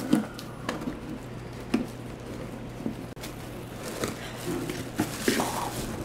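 Paper sticker seal peeling off a cardboard box and the box flaps being opened: scattered scrapes and taps of cardboard, then plastic wrapping rustling near the end.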